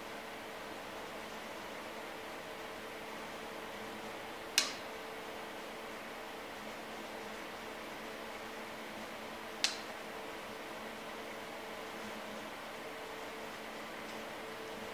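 Steady hum of a machine's cooling fan, with two sharp metallic clicks about five seconds apart.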